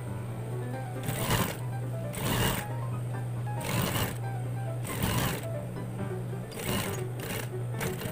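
Industrial sewing machine stitching a collar band onto a jersey neckline in about six short runs, stopping and starting as the fabric is guided round the curve.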